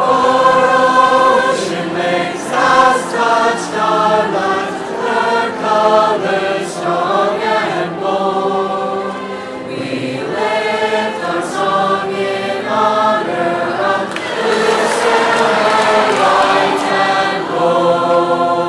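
A mixed high school choir singing in harmony, holding long chords that change every second or so, with a fuller passage near the end.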